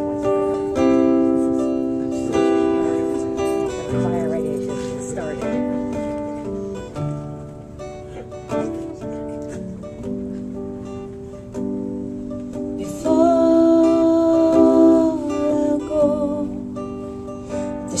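Acoustic guitar playing the instrumental intro to a country ballad, chords ringing and changing every second or two. About thirteen seconds in, a louder held melody line comes in over the guitar for a couple of seconds, then drops back.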